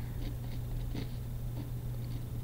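Pen writing on paper, a few faint scratching strokes over a steady low electrical hum.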